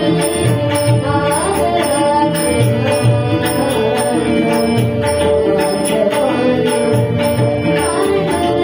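A girl singing a Marathi devotional bhajan to harmonium, with pakhawaj and tabla keeping a steady rhythm.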